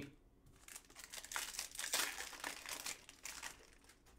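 Foil wrapper of a trading-card pack being torn open and crinkled by hand, a crackly rustle lasting about three seconds.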